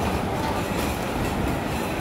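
Steady rumbling background noise with no distinct events.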